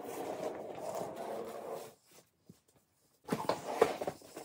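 Fabric luggage being handled: about two seconds of rustling, a short pause, then a few quick knocks and clicks as a soft-sided suitcase is grabbed by its handle near the end.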